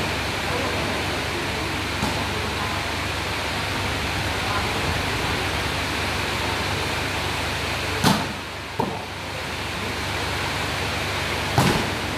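Steady murmur of a watching crowd, with two sharp slaps of a volleyball being struck, about eight seconds in and again just before the end.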